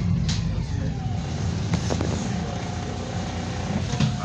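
Bus diesel engine running with a steady low rumble as the bus slows and pulls in to a stop, with two short hisses, about a third of a second in and near the two-second mark, and a faint steady whine from about a second in.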